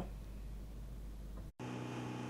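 Faint room hiss. About one and a half seconds in, the sound cuts out briefly and a steady low boat-engine hum begins.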